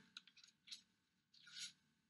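Near silence: room tone with a few faint clicks in the first second and a soft rustle about one and a half seconds in.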